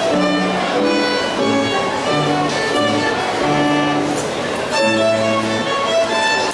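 Solo violin played with the bow: a melody of separate held notes, some a second or more long, by a student violinist playing a graded exam piece.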